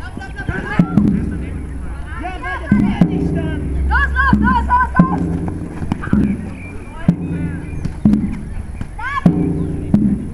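A Jugger timekeeping drum struck repeatedly, each beat ringing briefly, counting the stones of play. Players shout over it.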